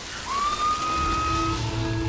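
Dramatic TV music score: a single tone slides up and holds over a faint hiss, then a low rumbling drone and a sustained chord come in about a second in.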